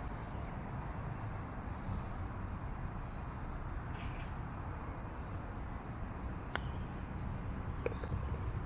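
Wind buffeting the phone microphone with a steady low rumble. About two-thirds of the way through, a putter strikes a golf ball with a single sharp click, and a small knock follows just before the end as the ball drops into the cup.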